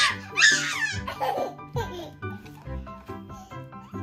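A toddler's loud, shrieking laughter in the first second, followed by a few quieter laughs, over light background music with steady notes.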